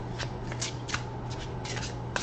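A deck of tarot cards being shuffled by hand, the cards sliding against each other in short, irregular swishes, over a low steady hum.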